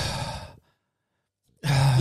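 A man's sigh: one breathy exhale of about half a second, close into a microphone.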